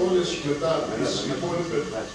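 Speech only: a man talking.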